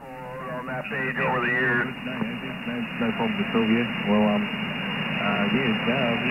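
A man's voice coming in over a CB radio receiver on 27.345 MHz, heard through a steady bed of static hiss. The received audio sounds narrow and thin, with no treble.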